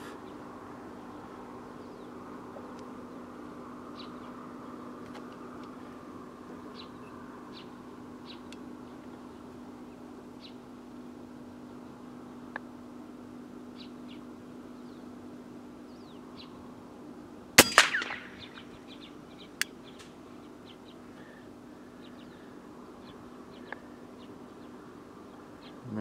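A single shot from an FX Impact X .22 PCP air rifle fired inside a car's cabin, a sharp crack with a short ring-off about two-thirds of the way through. A fainter click comes about two seconds later. Under it runs a steady low hum with faint bird chirps.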